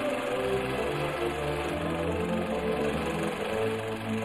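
Music with no words: held low bass notes under chords that change every second or so.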